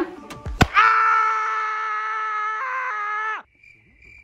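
A long, steady, high held 'aah' in a voice, lasting about two and a half seconds, with a small step in pitch near the end, then cut off suddenly. Two short sharp clicks come just before it.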